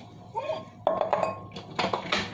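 Kitchenware being handled: a water pitcher and a clear plastic blender jar knock and clink against each other and the countertop, several sharp knocks in the second half.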